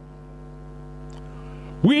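Steady electrical mains hum from the microphone and sound-system chain during a pause in speaking. A man's voice comes back in near the end.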